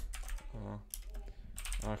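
Typing on a computer keyboard: a string of quick keystrokes entering a line of code.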